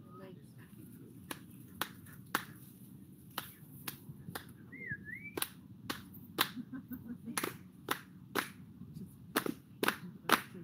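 A few people clapping their hands in a steady rhythm, about two claps a second, beginning about a second in.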